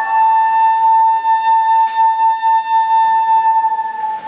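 A wooden flute holding one long high note with a slight waver in it.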